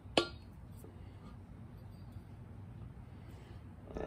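A single sharp metallic clink shortly after the start as the air spring is shifted to center on its steel lower bracket, followed only by faint handling noise.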